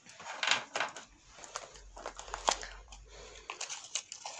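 Close handling noises while a candle is being lit: crinkling and rustling with a few sharp clicks scattered through.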